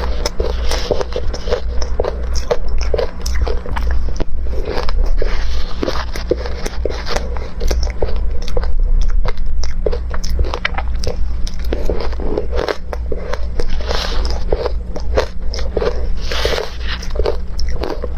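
Ice chunks dusted with milk powder and matcha being bitten and chewed close to the microphone: dense, irregular crunching and cracking throughout, over a steady low hum.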